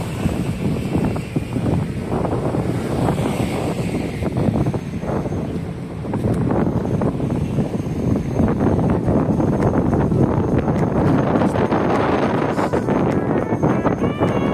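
Wind buffeting the microphone: a loud, gusty rumble that runs throughout.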